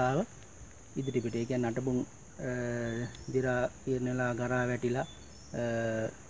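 A steady, high-pitched drone of insects runs unbroken under a man talking in short phrases.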